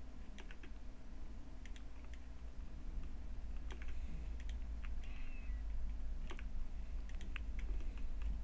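Irregular, scattered clicks of a computer mouse and keyboard as anchor points are clicked and dragged with the Control key held, over a steady low hum.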